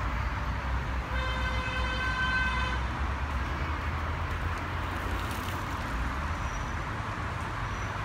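Steady low outdoor rumble of distant traffic, with one held, steady-pitched tone lasting just under two seconds about a second in.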